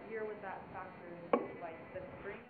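Faint, off-microphone voice of an audience member asking a question, with one sharp click a little over a second in.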